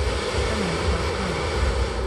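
Twin propane burner of a hot-air balloon firing, a steady rushing blast of flame heating the envelope that lasts about two seconds.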